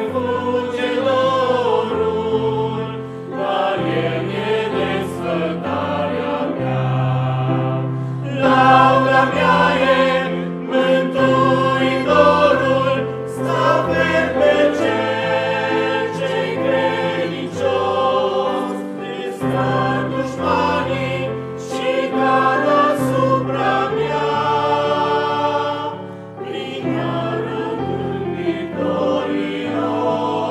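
Mixed church choir of men's and women's voices singing in harmony, with sustained bass notes under the upper parts.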